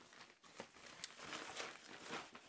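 Faint rustling and crinkling of a plastic-coated reusable shopping bag, made from recycled plastic bottles, as hands pull it open, with a couple of small ticks.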